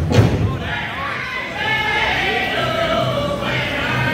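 Powwow drum group singing over a big drum. The hard drumbeats, about two a second, stop shortly after the start; from about a second in, high-pitched voices sing long held lines with soft, dull beats underneath.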